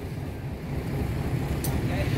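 A truck engine idling, a steady low rumble, with one brief click about three-quarters of the way through.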